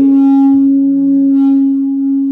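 Public-address microphone feedback: a loud, steady tone held at one pitch.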